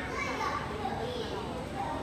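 Children's voices and chatter from onlookers, with bits of excited speech.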